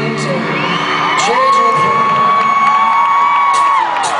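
Live rock band music in an arena: a high note slides up about a second in and is held for about two and a half seconds, then drops away near the end. Crowd whoops rise over the band.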